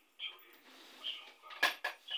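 Small hard items clinking as they are handled: a few light knocks, then two sharp clinks close together near the end.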